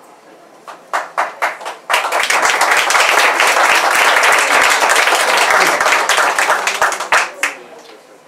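Small audience applauding: a few scattered claps, then full applause for about five seconds that thins out to a last few claps near the end.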